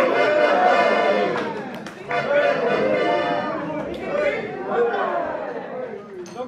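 Many voices talking and calling out at once in a large hall, a crowd's chatter that rises and falls.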